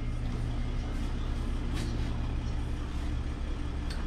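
Steady low mechanical hum, like a running engine or machine, with a faint click about two seconds in.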